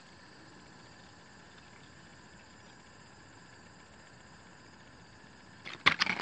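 Faint steady room hiss, then near the end a quick cluster of sharp crackles and clicks as a clear plastic blister pack is handled.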